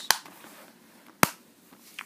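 Two sharp clicks from a plastic Blu-ray case being closed and handled. The second click, a little over a second in, is the louder.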